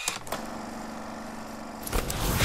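Sound effect of an animated channel logo sting: a sudden start, then a steady droning hum that swells at the very end as the logo sweeps in.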